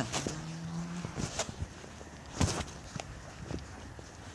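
Footsteps on grass and gravel, a handful of irregular steps with the loudest about two and a half seconds in, after a brief hummed voice at the start.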